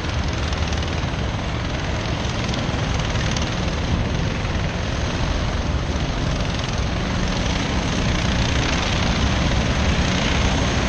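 A pack of racing kart engines buzzing together at a distance, a steady blended drone with no single engine standing out. It gets a little louder near the end as the karts come closer.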